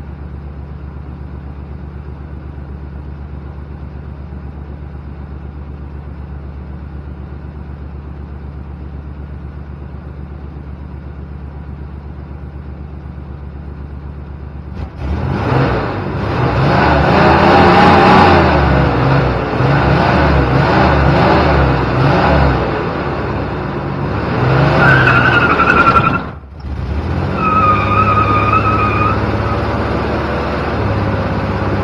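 Chevy S10's 4.3-litre V6 idling steadily, then revved hard about halfway through for a burnout, the rear tires spinning and squealing with a wavering, then steady high squeal. The noise drops out briefly near the end and the squeal starts again.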